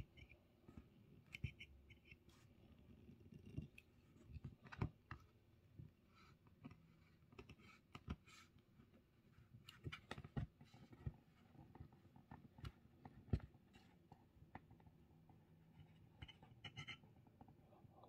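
Faint, scattered clicks and short scratches of a craft knife blade cutting along paper pages to separate them from a notepad block.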